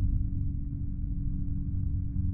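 A dense, low, muffled rumble with a steady low drone tone that sets in right at the start.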